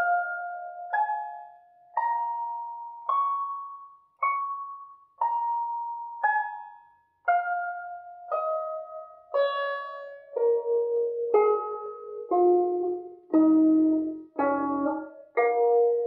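Guzheng (Chinese zither) strings plucked one note at a time in a beginner's slow practice, about one note a second, each note ringing and dying away. In the second half the notes move lower and ring over one another.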